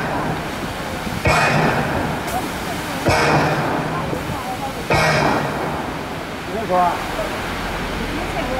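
Musical fountain's water jets shooting and splashing in three sudden surges about two seconds apart, each fading away into the rush of falling water.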